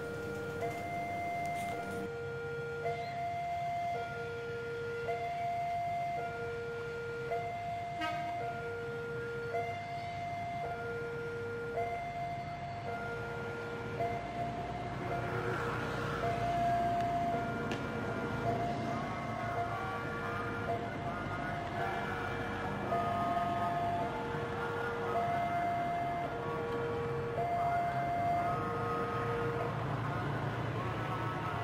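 Railway level-crossing warning alarm sounding a repeating two-tone low-high signal, about one cycle every two seconds, as a train is due. From about halfway in, the noise of a train running past the station joins it.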